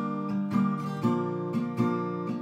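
Acoustic guitar strummed without singing, chords re-struck about twice a second and ringing between strums.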